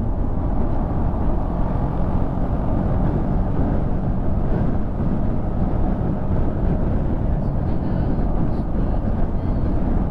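Motorcycle cruising steadily at expressway speed: an even engine hum mixed with wind and road noise.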